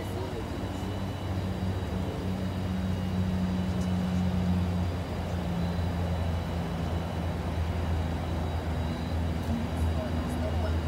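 A vehicle engine idling with a steady low hum, with indistinct voices faintly under it.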